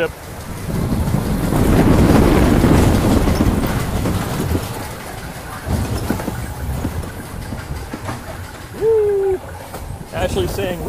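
Spinning coaster car running along its steel track, a loud rushing rumble that swells about a second in and eases after about four seconds. A short held voice-like call comes near the end.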